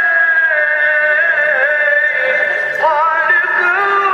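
Music: a solo voice singing long held notes with wavering, ornamented turns.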